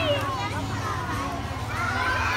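Many young children chattering and calling out at once, a continuous overlapping babble of small voices.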